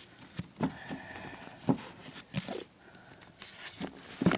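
Paperback book being handled and pushed back into a tightly packed shelf: a few soft knocks and scrapes of the book against its neighbours and the shelf as it won't go in.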